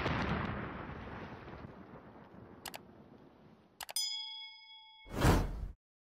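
Animated outro sound effects: an explosion blast that dies away over about two seconds, a few sharp clicks, then a bell-like ding about four seconds in that rings for a second. A whoosh near the end is the loudest sound.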